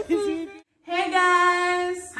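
A voice singing, holding one long steady note that begins about a second in, just after a brief silent break in the sound.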